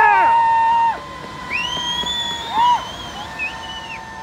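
Onlookers cheering and whooping in long, held yells at several pitches, loudest in the first second, over the steady rush of a large waterfall.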